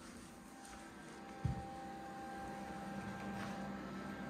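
Faint steady hum of room tone with thin steady tones, and a single soft low thump about one and a half seconds in.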